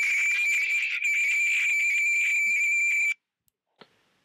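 A loud, steady high-pitched squeal over the video-chat stranger's audio, cut off suddenly about three seconds in when the stranger's audio is muted.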